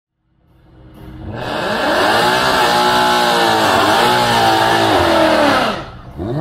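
A drag car's engine revving high during a burnout, its pitch swinging up and down over the hiss of spinning, squealing tyres. It fades in over the first couple of seconds and drops off just before the end.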